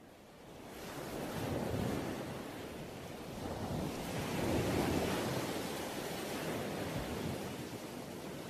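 Surf washing on a shore, fading in from silence and swelling and ebbing in slow waves, recorded as an ambient intro on a song track.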